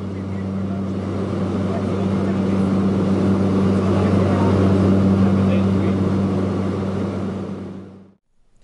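Steady drone of an aircraft engine and propeller heard inside the cabin, a low hum with a rushing hiss over it. It swells slowly, then fades away near the end.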